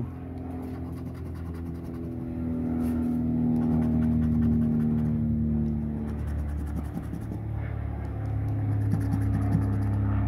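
Coin scratching the coating off a scratch-off lottery ticket, under a steady low engine-like hum that swells to its loudest about four seconds in, eases off, then grows again near the end.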